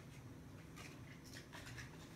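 Faint light ticks and scratches from metal tweezers handling a mink false eyelash against a clear plastic lash tray, several small clicks in the second half, over a low steady hum.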